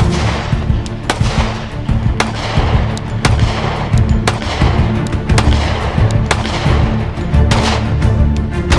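Background music with a steady beat, over which a Glock Model 30 .45 ACP compact pistol fires a string of single shots, about one a second.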